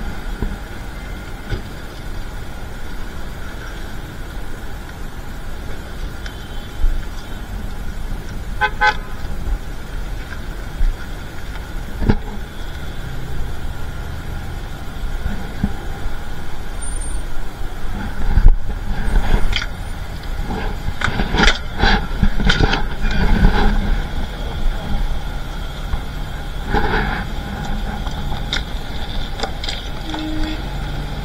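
Street traffic running steadily, with a short car horn toot about nine seconds in and scattered knocks and clatter later on.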